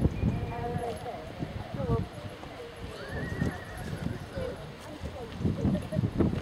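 Hoofbeats of a horse trotting on grass, with indistinct voices in the background and one high call that rises and falls about three seconds in.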